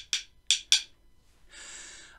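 A pair of wooden rhythm sticks tapped together: about four sharp clicks in two quick pairs within the first second.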